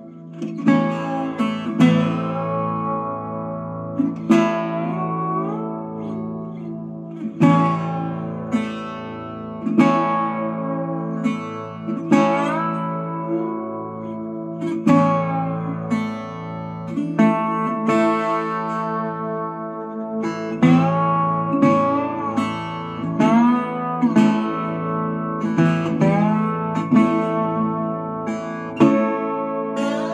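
Baritone 12-string resonator guitar with a steel body, played unplugged with a slide and tuned to open A. Picked notes and chords ring out and fade every second or two, and the slide makes pitches glide up into notes.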